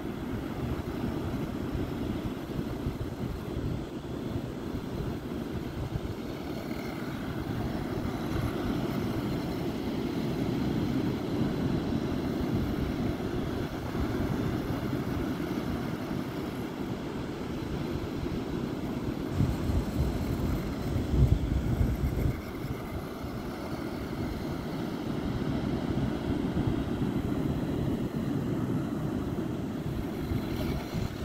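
Steady rushing noise of ocean surf and wind. About 19 seconds in, a louder low buffeting of wind on the microphone comes in for a few seconds.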